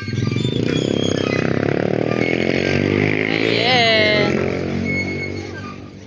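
A passing vehicle's engine, loud and steady, growing to its loudest about four seconds in and then fading away near the end.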